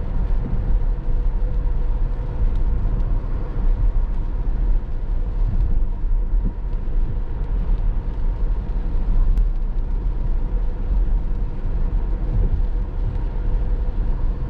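Cabin noise of a Tesla Model S Plaid, an electric car, driving at about 35–40 mph on a wet road in rain: a steady low rumble of tyres on wet pavement, with a faint steady hum.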